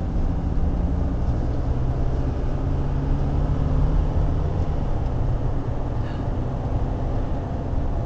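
Car engine and tyre noise heard inside the cabin while driving steadily along a road: a steady low hum.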